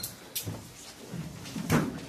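Knocks and bumps from people moving about a small room: a sharp knock about a third of a second in, then a louder thump near the end.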